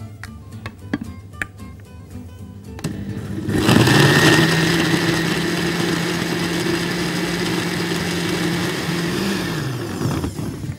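Countertop electric blender puréeing dates with milk and cinnamon. It starts about three and a half seconds in, runs loud and steady at one pitch, then winds down just before the end, over light background music.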